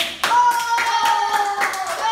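Irregular hand claps from a group, with one high voice holding a long, slightly falling note over them.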